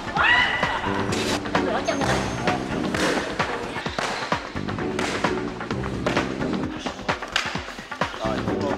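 Background music with a steady beat and sharp percussive hits. A short high call sounds near the start.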